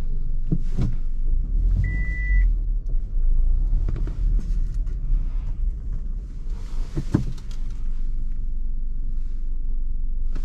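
Low, steady engine and road rumble inside the cabin of a Maruti Suzuki Ciaz creeping through a tight lane. A short single electronic beep sounds about two seconds in, and a few faint clicks come early and again around seven seconds in.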